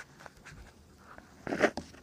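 Paper workbook page being turned: faint rustling and small handling clicks, with a short, louder paper rustle about one and a half seconds in.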